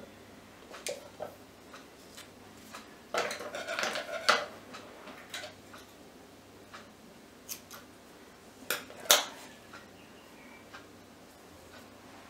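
Scissors snipping jute twine, two sharp clicks about nine seconds in, amid soft rustling and handling of the twine-wrapped stick.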